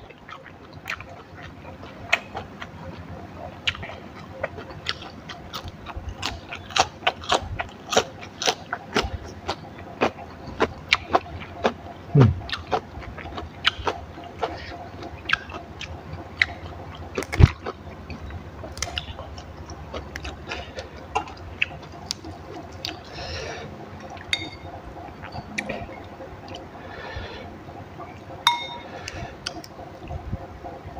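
Close-up eating sounds: many crisp clicks and crunches of chewing raw leafy greens and rice, irregular throughout, with a few louder snaps.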